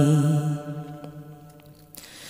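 A singer's held last note of a line of a Bengali devotional song, fading away over about a second and a half into a brief lull before the next line.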